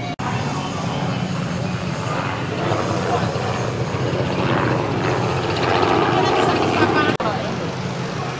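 Ferrari 458 Speciale's 4.5-litre flat-plane V8 idling with a steady low drone, with people talking nearby.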